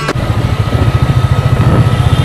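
Motorcycle engine running steadily while riding on the road, a low rumble with a fast pulse, heard from a camera on the moving bike.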